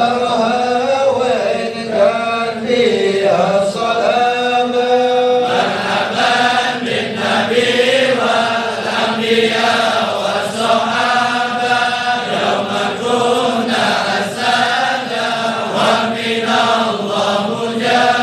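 A group of men chanting an Arabic supplication together in long, slow melodic phrases. About five seconds in the chant grows fuller, as if more voices join in.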